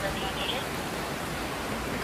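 Steady rush of fast-flowing floodwater, an even noise with no break.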